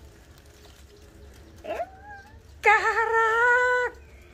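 A high-pitched voice exclaiming in amazement as the foil comes off the bleached hair: a short rising cry about halfway through, then a long drawn-out 'ooh' held at one pitch for about a second near the end.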